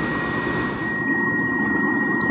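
Snyder General GUA gas furnace's combustion blower running steadily with a thin high whine, in a furnace that keeps failing to light: the technician puts it down to either a gas supply problem or a gas valve failure. The upper hiss drops away abruptly about halfway through.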